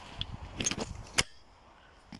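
Handling noise from a handheld camera being moved: low rumbling and a few clicks, the sharpest just over a second in, then it goes faint.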